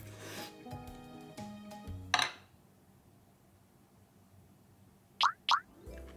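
Background music that ends in a sharp hit about two seconds in, then a brief hush, then two quick rising whistle-like sound effects in a row near the end.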